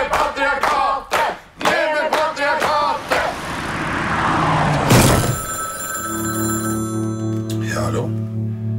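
Film-trailer soundtrack: shouting voices over music with sharp hits in the first three seconds, then a swelling whoosh that ends in a loud hit about five seconds in. A sustained low music chord follows, with a high bell-like ringing over it that stops just before the end.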